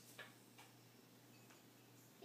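Near silence: room tone with a faint steady hum and a few faint, irregular clicks.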